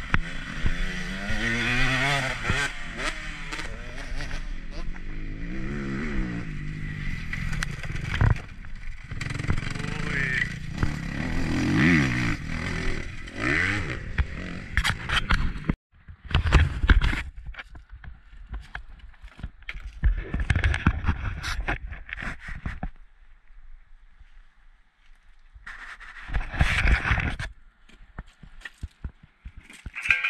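Husqvarna 125 two-stroke motocross bike being ridden on a dirt track, the engine revving up and down repeatedly for about the first half. After a sudden break, the second half holds close handling knocks and rubbing on the camera.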